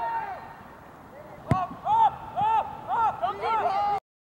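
Soccer players shouting short, repeated calls on the field, with one sharp thud of a ball being kicked about a second and a half in.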